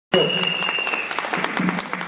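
Audience applauding, with a steady high-pitched tone during the first second.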